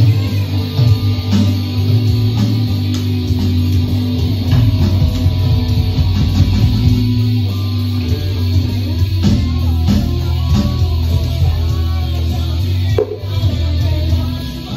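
Electric guitar played loudly through an amplifier in a heavy black-metal riff, with a thick, sustained low end. The sound briefly drops near the end.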